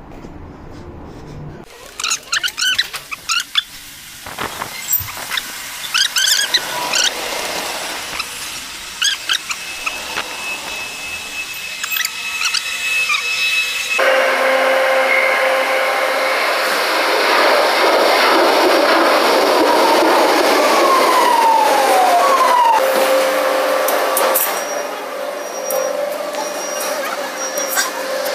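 Footsteps and scattered clicks in a metro station passage. About halfway through, an abrupt cut brings the loud, steady running noise of a Madrid Metro train, with a held tone and two falling whines late on.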